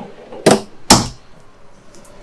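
Wooden kitchen cabinet drawer pushed shut: two sharp knocks about half a second apart, the second one heavier as the drawer closes against the cabinet.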